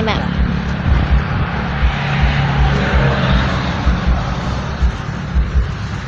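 A steady engine hum from passing traffic, strongest about two to three seconds in, over wind rumbling on the phone's microphone.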